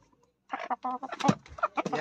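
Chickens calling in a run of short, irregular calls that start about half a second in, after a brief silence.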